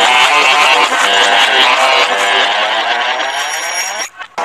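Loud, heavily effects-processed cartoon audio: the clip's sound pitch-shifted and layered into a dense wall of many stacked tones, with some pitches rising near the end before it cuts off.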